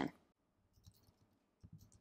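Computer keyboard typing: a few faint keystrokes, one about a second in and a quick cluster near the end.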